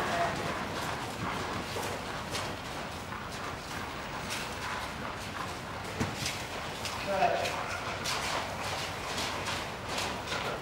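A horse walking on arena sand, with a person's footsteps: a steady run of soft, irregular steps. Brief faint talk comes about seven seconds in.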